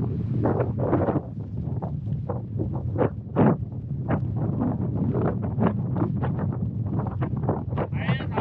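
Wind buffeting the camera's microphone: a continuous low rumble broken by frequent gusts.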